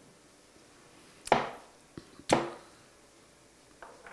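Two sharp knocks about a second apart, with a couple of fainter taps, as objects are set down on a wooden kitchen cutting board and counter while raw lamb shanks are readied for oiling.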